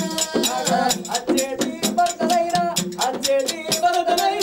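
Oggu Katha folk music: men singing held, wavering lines over a fast, steady beat of a hand drum and small hand cymbals.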